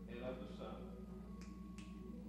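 A man speaking briefly, then two short sharp clicks about half a second apart near the end, over a steady low hum and a faint held note.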